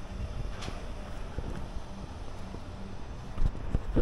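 Wind buffeting the microphone, a steady low rumble over faint outdoor ambience.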